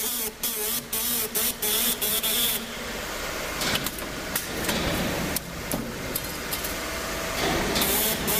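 Automatic strip-fed press machine running, its pneumatics giving short sharp air hisses about three times a second, mixed with clicks and a steady machine hum. The hisses are dense at first, give way to steadier hiss with scattered clicks, and pick up their quick rhythm again near the end.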